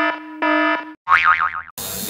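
Edited-in comedy sound effects: a buzzy, game-show-style tone repeating in pulses about twice a second, then, just after a second in, a short wobbling cartoon 'boing'.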